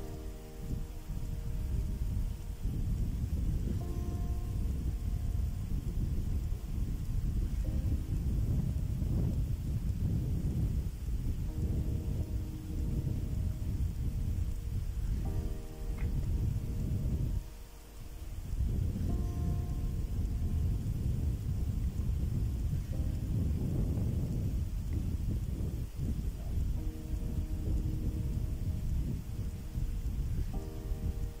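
Wind buffeting the microphone: a loud, uneven low rumble that drops away briefly a little past the middle, with quiet background music beneath it.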